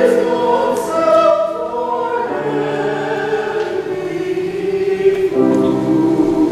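Mixed church choir of men's and women's voices singing sustained chords. The harmony moves every second or so, and a fuller new chord comes in near the end.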